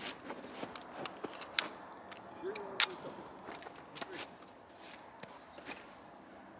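Pistol being loaded and readied: a few sharp clicks and light handling noise, the loudest click about three seconds in.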